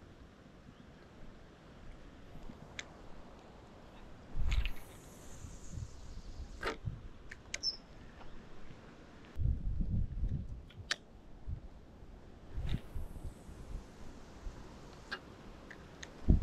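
Quiet open-air background by water, with low rumbling gusts of wind on the microphone a few times, several short sharp clicks, and one brief high bird chirp.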